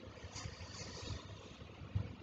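A quiet pause in speech: faint, uneven low rumble and light hiss of background noise.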